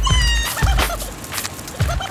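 Hip-hop backing beat of kick drum and snare, with a short high-pitched wailing tone on the beat at the start and again near the end.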